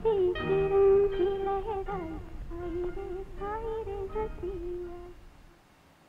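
Closing bars of a Hindi film song: a melody over light accompaniment that fades out about five and a half seconds in.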